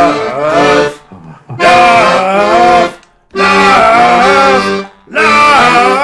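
Piano accordion playing held chords in four short phrases, broken by brief gaps, with a man's sung melody wavering over them. Heard through a video-call connection.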